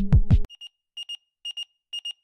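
Electronic music with a pounding beat cuts off abruptly about half a second in. Then a digital alarm clock's high-pitched beeping starts, in quick double beeps about twice a second.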